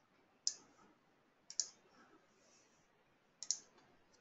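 Quiet clicking at a computer during a screen-recorded presentation: a single click, then two quick double clicks, the last just before the slide advances.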